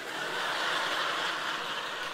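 Audience laughing together in a large hall, a dense wash of laughter that swells in the first half-second and then slowly eases.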